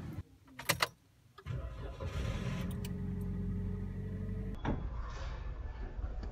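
Two sharp clicks, then a Toyota car engine starts about a second and a half in and settles into a steady low idle. A sharp knock comes near the end.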